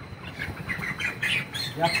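Young broiler chickens peeping: a quick run of short, high calls that starts about half a second in.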